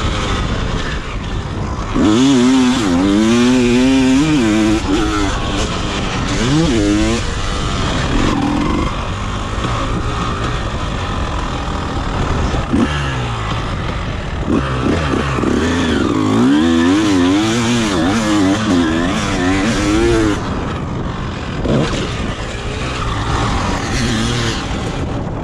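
1999 Honda CR250R's two-stroke single-cylinder engine under riding load, revving up and down repeatedly as the throttle is worked. It eases off for a few seconds near the end.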